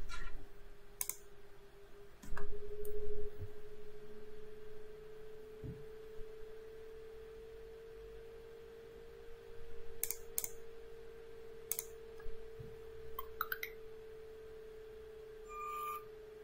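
A LEGO SPIKE Prime motor briefly running to lift a robot's gripper arm: a short whir lasting about a second, starting a little over two seconds in. Around it are a steady faint high hum and a few sharp clicks.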